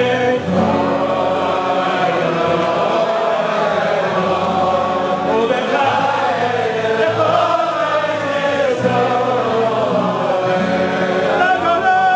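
A niggun, a slow Jewish devotional melody, sung by a male lead singer and a crowd of men singing along, with acoustic guitars accompanying.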